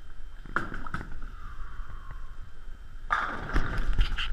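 A bowling ball lands on the wooden lane with a thud about half a second in and rolls down it with a steady rumble. About three seconds in, a loud crash follows: the ball striking the pins.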